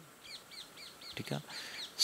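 A bird calling in the background: a quick run of about eight short, high, falling notes, faint.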